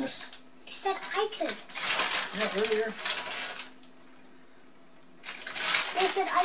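A plastic bag of shredded cheese crinkling and rustling in hand as the cheese is sprinkled onto a pie, in two spells with a quieter stretch of about a second and a half between them. A steady low hum runs underneath.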